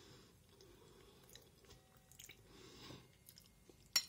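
Faint chewing of soft rice porridge, with a few small clicks of the mouth.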